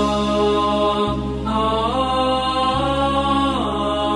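Opening theme music: a chanting voice holds long melodic notes over a low sustained drone, stepping up in pitch about a second and a half in and sliding back down near the end.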